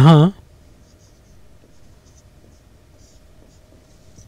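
Marker pen writing on a whiteboard: a string of faint, short strokes spread over a few seconds.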